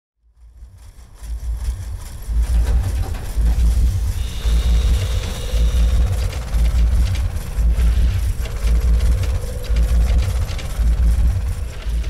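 Heavy construction-machine diesel engine running with a deep, pulsing rumble, fading in over the first two seconds, with a faint wavering whine at times.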